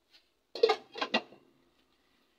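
A glass pot lid set onto a metal cooking pot: a clatter about half a second in, then two quick clinks around a second in, each ringing briefly.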